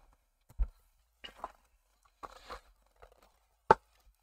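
Plastic paint-palette modules and their clip-on lids being handled: a few soft knocks and scrapes, then a single sharp plastic click near the end as a lid comes free.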